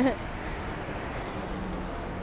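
Steady city street noise: traffic and road rumble. A woman's voice trails off at the very start.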